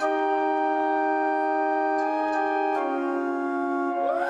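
Electronic keyboard playing held chords of sustained tones, shifting to a new chord about three-quarters of the way through.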